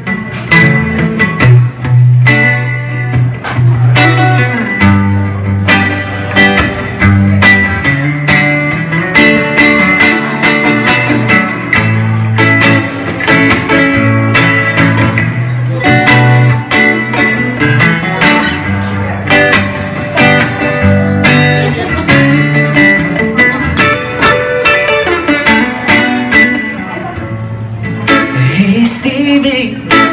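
Two acoustic guitars playing the instrumental intro of a blues song, picked lead lines over moving bass notes; the playing eases off briefly near the end before the vocal comes in.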